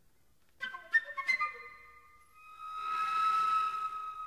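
Concert flute with a small chamber ensemble in atonal modern music: after a brief pause, a cluster of short, sharp notes about half a second in, then one long high flute note that swells and holds.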